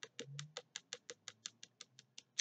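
Faint typing on a computer keyboard: a quick, fairly even run of light key clicks, about six a second.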